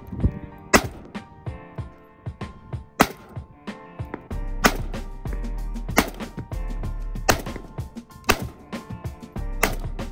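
Single aimed shots from a Zastava ZPAP M70 AK-pattern rifle in 7.62x39, about seven sharp cracks one to two seconds apart. Background music plays under them, with a steady bass that comes in about four seconds in.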